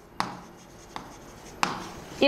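Pen writing on a screen, with a few sharp taps: one just after the start, a weaker one about halfway and another near the end.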